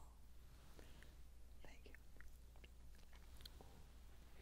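Near silence with faint, scattered clicks and rustles: a linen cloth and silver communion vessels, a chalice and paten, being handled on the altar.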